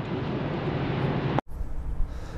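Steady road and tyre noise inside a Volkswagen ID.4 electric car's cabin at highway speed, with no engine sound. It cuts off abruptly about a second and a half in, giving way to quieter outdoor air with a low wind rumble on the microphone.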